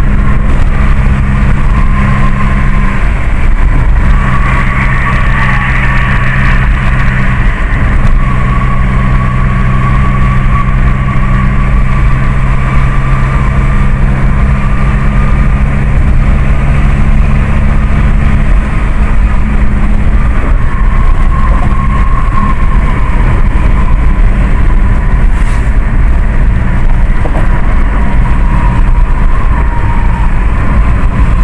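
Cabin noise of a car cruising on a concrete motorway: a steady engine hum under loud tyre and road rumble.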